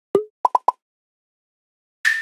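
Cartoon-style pop sound effects: one pop, then three quick higher-pitched pops in a row.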